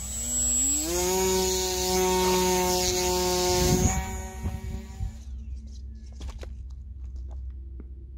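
Small electric RC plane motor and propeller spinning up to a steady whine, rising in pitch over the first second and holding for a few seconds, then dying away about five seconds in as the plane loses thrust. The owner suspects the propeller broke in mid-air.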